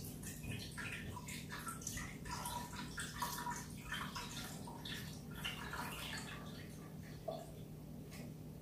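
Almond milk being poured from a carton into a blender jar: a faint, irregular splashing trickle of liquid.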